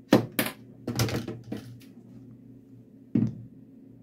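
Sharp plastic clicks and knocks of handheld multimeters being handled and set down on a wooden desk: a cluster in the first second and a half and one more about three seconds in, over a faint steady low hum.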